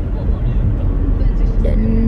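Steady low rumble of road and engine noise inside the cabin of a moving car; a woman's voice starts again near the end.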